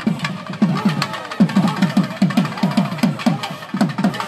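Thavil barrel drums played in a fast, steady rhythm, about four or five deep strokes a second, each falling in pitch.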